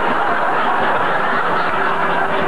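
Studio audience laughing together, a steady mass of laughter.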